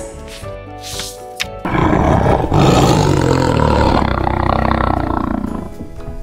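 A tiger roaring: one long roar that starts suddenly about one and a half seconds in and fades near the end, over background music.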